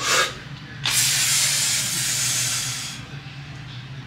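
A man taking a short breath in, then blowing out hard through pursed lips in one long hiss of about two seconds as he pulls a heavy barbell deadlift: breathing out under the strain of the lift.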